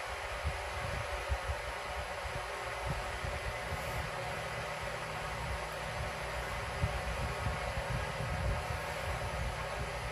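A hand rubbing a cat's belly fur on a bedspread: soft, irregular low rustles and bumps under a steady room hiss.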